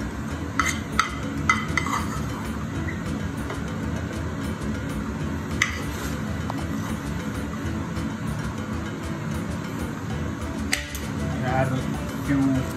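Light clinks of a metal spoon and pan against a china plate while risotto is plated: a few in quick succession about a second in, then single ones near the middle and near the end, over a steady low background hum.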